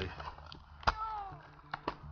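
A domestic cat meows once, a single falling call about a second in. Sharp knocks from climbing on the wooden trunk come just before the call and twice in quick succession near the end.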